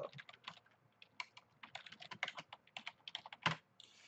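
Typing on a computer keyboard: a quick, irregular run of key clicks, several a second, fairly faint.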